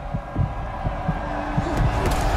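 Film-trailer sound design: low, dull thuds roughly every half second over a sustained droning tone.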